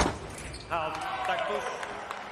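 A sharp thud as a foil touch lands, then, a little under a second later, a fencer's drawn-out shout that falls in pitch, celebrating the scored touch.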